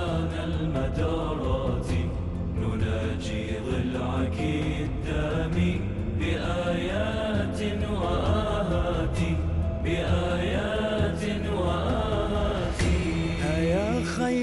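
Music: a slow chanted religious lament (nadba), with drawn-out sung lines over a steady low drone.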